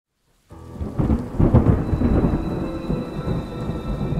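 Thunder rumbling over steady rain, starting suddenly about half a second in, loudest soon after, then slowly fading.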